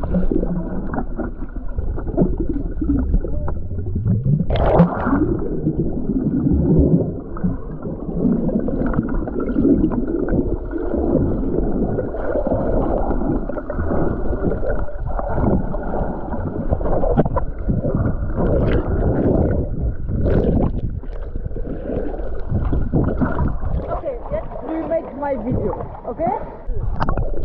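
Muffled underwater sound from a camera submerged in the sea: dull, low water noise with bubbling and gurgling. A brief brighter splash about four and a half seconds in.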